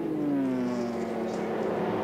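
V8 touring car engines at racing speed. The main engine note falls in pitch over about the first second, then holds steady.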